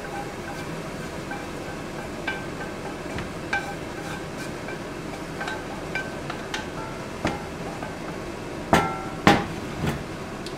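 A wooden spatula scrapes browned ground beef out of a frying pan into an enamelled pot, knocking on the pan and pot rim about once a second with short ringing clinks. Near the end come two louder knocks as the frying pan is set down on the glass-ceramic hob. A steady hiss runs underneath.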